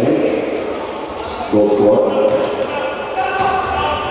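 Futsal ball thudding and bouncing on an indoor court, with men's voices calling out in the hall.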